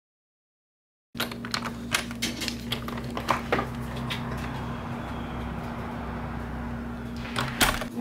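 Silence for about a second, then a steady low room hum with scattered clicks and knocks, heaviest near the start and again near the end.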